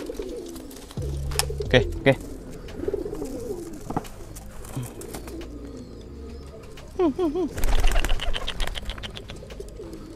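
Domestic pigeons cooing, with low wavering coos repeating throughout.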